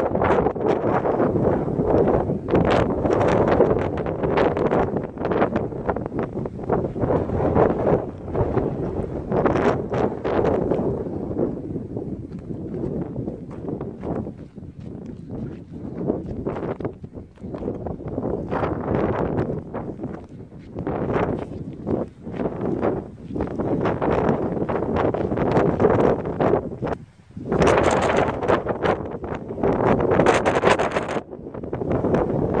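Wind buffeting the microphone in gusts: a loud, rough rumble that rises and falls, with a brief lull near the end.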